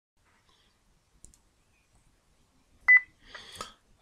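Near silence broken by a faint click, then a loud sharp click with a brief high beep just before the three-second mark, followed by a soft rustle.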